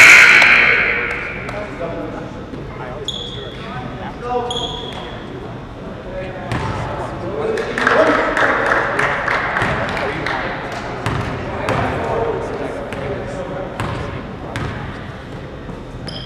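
Basketball bouncing on a hardwood gym floor amid players' and spectators' voices, with a loud burst of shouting at the start. Two short, high whistle blasts come a few seconds in.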